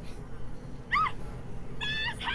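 A short, high-pitched cry that rises and falls about a second in, with a second high call starting near the end.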